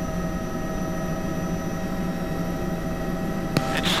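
Bell 206B III helicopter's Allison 250 turbine and rotor running steadily, heard inside the cockpit: a steady whine of several tones over a low rumble. A sharp click near the end.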